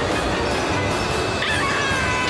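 Cartoon soundtrack of an energy-beam blast: a loud, steady rush of noise mixed with dramatic music. A high-pitched cry or shriek starts near the end.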